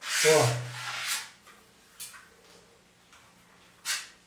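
Metal spatula scraping decorative putty onto a tiled wall: a loud scraping stroke in the first second, then softer brief strokes about two seconds in and near the end, as the putty is pressed and compacted rather than skimmed off.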